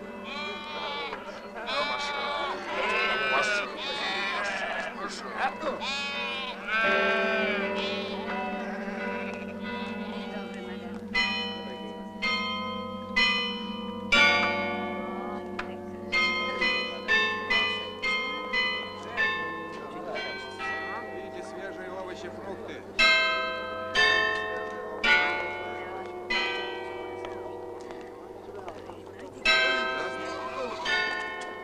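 Sheep bleating through the first third. From about eleven seconds in, several church bells of different pitches are struck one after another, each stroke ringing on and fading, over a low steady hum.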